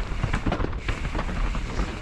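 Mountain bike riding fast down a dirt trail: a continuous low rumble of the tyres on the dirt with an uneven clatter of knocks from the bike over roots and bumps.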